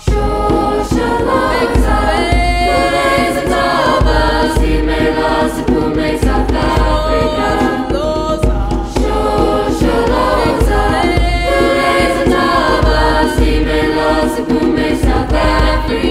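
A choir singing in several parts, with a hand drum beating underneath. The full choir comes in at once right at the start and keeps singing loudly throughout.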